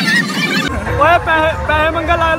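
Dance music with a high melodic lead, cut off abruptly less than a second in by loud, drawn-out high-pitched shouts from a man's voice, bending up and down in pitch, over a low steady hum.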